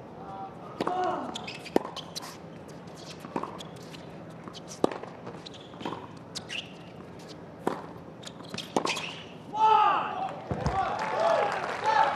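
Tennis rally: a serve, then crisp racquet-on-ball strikes about every second and a half over a murmuring crowd. About nine and a half seconds in, the crowd breaks into cheering and shouts as the point ends.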